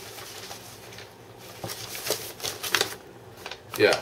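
Sheets of paper rustling in a series of short bursts as they are handled and leafed through.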